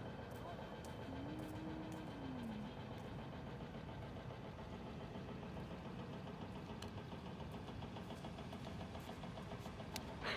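Steady low mechanical drone with a faint hum, like an engine idling, and a short tone a little over a second in that holds, then falls away.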